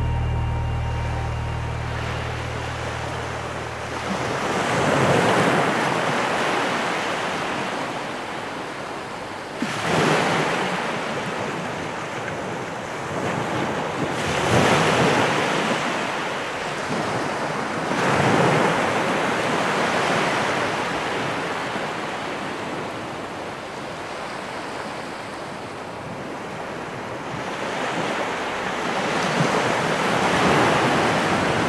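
Ocean waves breaking and washing in, each surge swelling and falling away about every four to five seconds, with a longer lull before a last surge near the end. The last notes of music fade out in the first couple of seconds.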